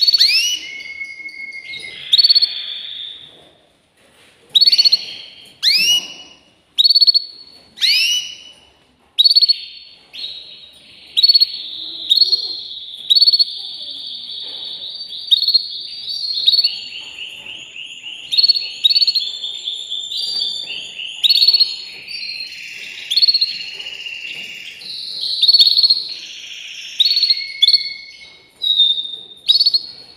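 Canary singing: a run of sharp rising whistled notes about once a second, then long rapid trills and rolls.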